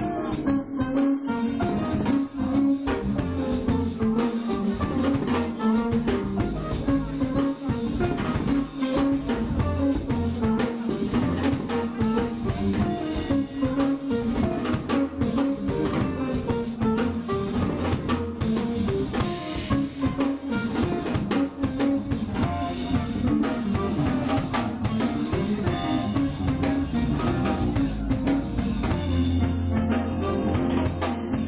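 Small jazz band playing live: trumpet over electric guitar, electric bass, keyboard and drum kit, continuous and at a steady level.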